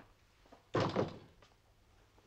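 A panelled wooden interior door shutting with a thud about three-quarters of a second in.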